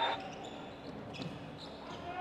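Faint basketball dribbling on a hardwood court over low arena ambience.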